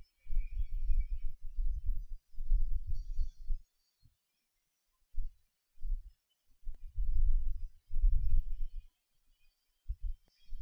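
Air from a Quick 861DW hot air rework station's nozzle buffets the microphone in irregular low rumbling gusts, heard as static, while it heats the solder of a charge port connector to desolder it. The rumble drops out briefly about four seconds in and again near the end.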